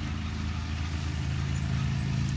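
A steady low mechanical hum, like a motor running.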